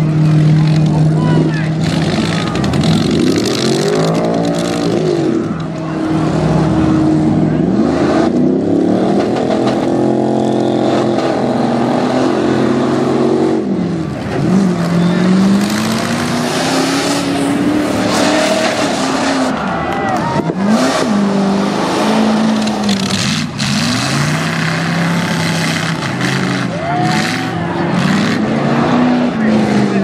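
V8 demolition derby cars revving hard, their engine notes rising and falling again and again as they accelerate and reverse, with several sudden metal-crunching hits of car on car.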